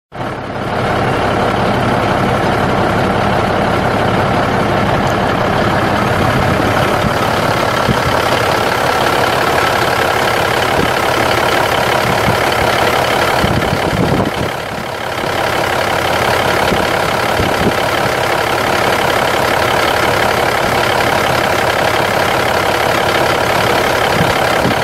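Cummins 14.0L inline-six turbo diesel of a 1990 Freightliner FLD semi truck idling steadily, with a brief dip in level a little past halfway.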